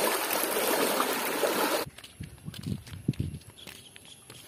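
Water splashing and sloshing as people wade through waist-deep floodwater, cut off suddenly about two seconds in. After that it is much quieter, with a few soft low thumps of footsteps on a path and one sharp click.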